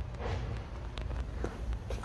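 A few soft footsteps, roughly half a second apart, over a steady low background rumble.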